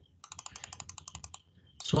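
A rapid run of about a dozen light clicks at a computer, about a second long, made while the image on screen is being zoomed in.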